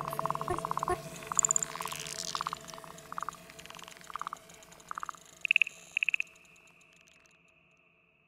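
Closing section of an experimental electronic-jazz track: short bursts of rapid pulsed trills and higher chirps, like frog or insect calls, over a faint held drone. They grow sparser and stop about six seconds in.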